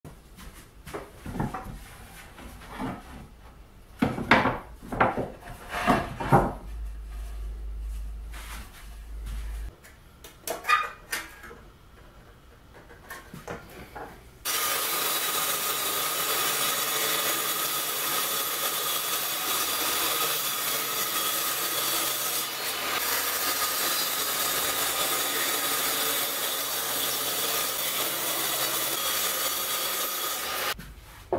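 Irregular wooden knocks and clatter as pieces are handled. Then, about halfway, a benchtop table saw runs steadily with a high whine while plywood is fed through the blade.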